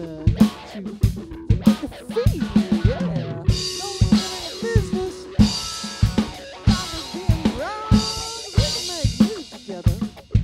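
Rock drum kit and Epiphone electric guitar playing an instrumental passage: a steady kick-and-snare beat with cymbal crashes every couple of seconds, while the guitar plays lead lines with bent, sliding notes.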